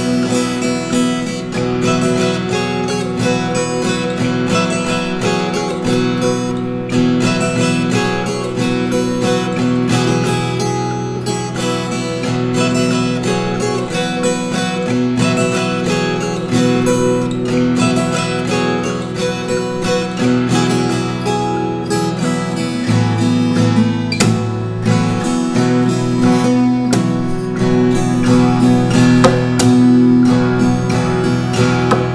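Steel-string acoustic guitar played fingerstyle: a picked melody over a bass line, with the notes ringing into each other continuously.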